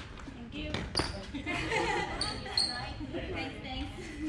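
Badminton rally: a few sharp racket hits on the shuttlecock in the first second or so, with short high squeaks of court shoes on the wooden floor, and voices talking.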